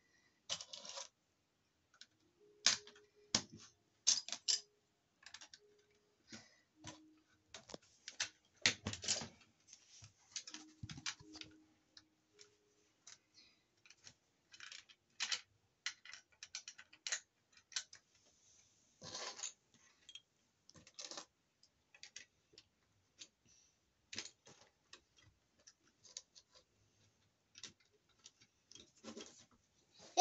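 Plastic Lego bricks clicking and clattering as they are pressed onto a baseplate and handled from a loose pile, in irregular sharp clicks with louder clusters about nine seconds in and again near nineteen seconds.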